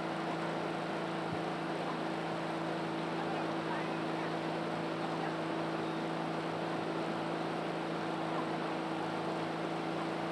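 A steady, unchanging low hum over a constant background hiss.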